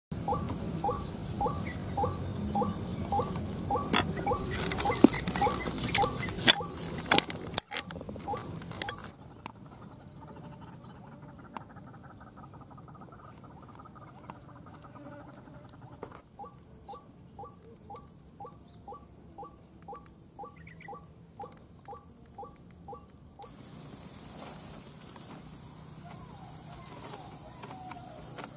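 White-breasted waterhen calling its repeated "ruak" note about twice a second, one run at the start and another from about 16 to 23 seconds. Between about 4 and 9 seconds a burst of sharp clicks and crackles is louder than the calls, and near the end a steady high whine comes in.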